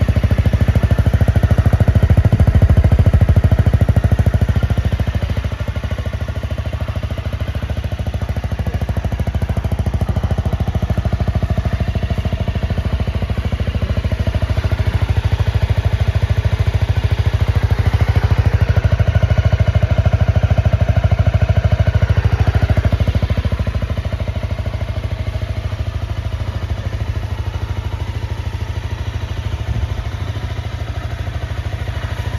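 Honda CRF250L Rally's single-cylinder four-stroke engine idling steadily, its level rising and falling a little over the stretch.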